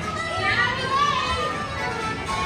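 Carousel ride music playing, with children's voices and chatter over it as the carousel turns.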